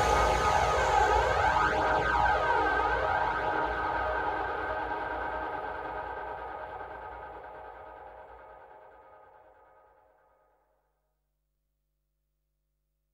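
Electronic dark psytrance ending on a held synthesizer drone with a sweeping effect gliding through it, fading steadily out to silence about ten seconds in.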